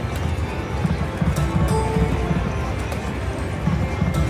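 Prowling Panther video slot machine playing its game music, a drumming beat of about three to four hollow thumps a second, with a few short chime notes over it as the reels spin.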